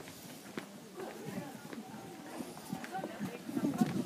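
Footsteps on stone paving, sharp clicks at a walking pace, with indistinct chatter of passers-by.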